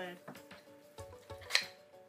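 Small metal food can being worked open by hand: a few short metallic clicks and scrapes, the sharpest about one and a half seconds in, over steady background music.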